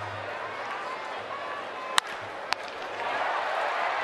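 Stadium crowd murmur, broken about halfway through by the sharp crack of a wooden bat hitting a pitched baseball, with a second, smaller knock about half a second later as the comebacker reaches the pitcher. The crowd noise swells afterwards.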